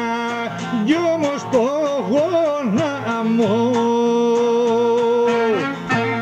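Greek folk song (dimotiko) with instrumental accompaniment: a voice sings an ornamented, wavering melody, then holds one long steady note from about three seconds in until just before the end.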